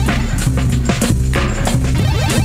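Experimental instrumental beat played live on a Roland SP-404SX sampler: deep bass under sharp drum hits about every half second.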